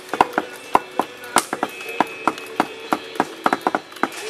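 Plastic clicking of a guitar-shaped video game controller being played: about fifteen sharp, uneven clicks over four seconds from its strum bar and fret buttons.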